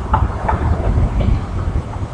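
Low, uneven rumble of wind and handling noise on a handheld camera's microphone, with a few faint clicks as the camera is handled.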